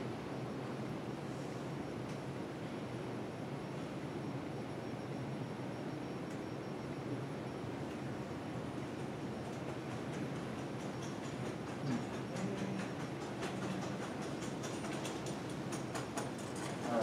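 Steady room noise in a meeting room. From about eleven seconds in, a run of quick, uneven clicks from typing on a laptop keyboard.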